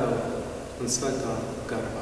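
Only speech: a man speaking in Latvian.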